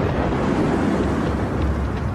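Steady, rushing, rumbling noise like a strong wind, with a heavy low rumble: a sound effect for a comet impact's approaching air blast.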